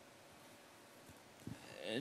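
Quiet room tone in a hall, then a man's voice starting up near the end with a drawn-out voiced sound as he begins to speak.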